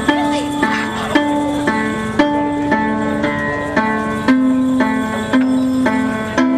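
Koto, the Japanese zither, being plucked in a steady repeating pattern of ringing notes, about two a second.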